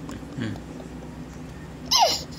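A small child's laughter: a short low falling vocal sound about half a second in, then a loud high-pitched squealing laugh starting near the end.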